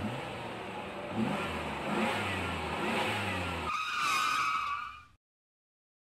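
A vehicle engine revving, its low drone rising in pitch several times. A little under four seconds in, a higher wavering squeal takes over, and the sound cuts off abruptly just after five seconds.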